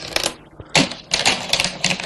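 Go stones clattering and clicking as they are handled: a short burst at the start, another a little before a second in, then a longer rattle of clicks for most of the second half.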